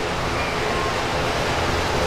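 Steady rushing noise of moving air, even throughout with a low rumble and no distinct events.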